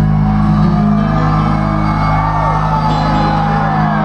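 Live country band through a PA, holding one sustained chord, with shouts and whoops from the crowd wavering over it.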